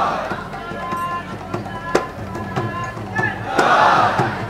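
Conch shell blown in long, steady notes, with a crowd of devotees cheering in a swell near the end and sharp strikes ringing out throughout.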